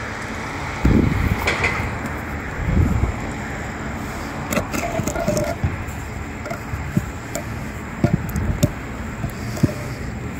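A heavy stone slab turned by hand as it pivots on a stone ball beneath it, giving a few dull low thumps early on and short knocks and clicks later, over a steady rushing background noise.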